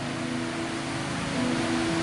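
Steady hiss of room and sound-system noise with a faint low hum held underneath.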